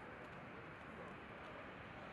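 Faint, steady outdoor background noise, a low rumble with a light hiss and no distinct event.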